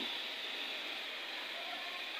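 Steady background hiss with no distinct sound in it: room tone.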